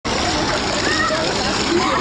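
Pool water churning and splashing steadily around people standing in it, with indistinct voices of other swimmers mixed in.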